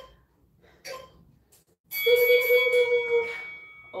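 Interval timer app on a tablet sounding its end-of-interval tone as the countdown reaches zero, signalling the end of the timed stretch: one long steady electronic tone starting about halfway through, with a thinner high ring fading on after it.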